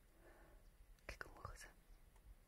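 Near silence with faint whispering, strongest from about a second in.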